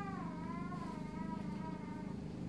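A flying insect buzzing faintly, its pitch wavering slowly up and down.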